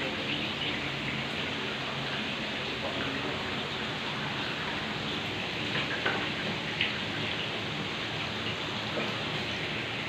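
Steady rush of water running and splashing over rocks, with a couple of brief louder spots about six and seven seconds in.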